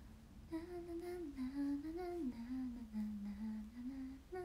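A young woman humming a tune, starting about half a second in and stepping up and down through a simple melody without words.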